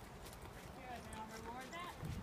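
Faint hoofbeats of a horse trotting on the soft dirt of a riding arena as it circles on a lunge line.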